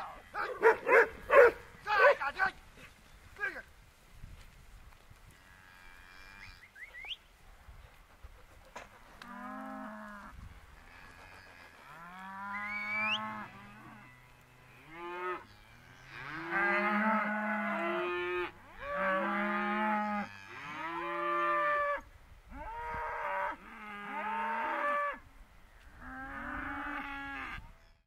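Young Hereford and Angus-cross steers and heifers mooing, a run of about eight long calls one after another in the second half, some bending up and down in pitch. A burst of short, sharp calls comes at the very start.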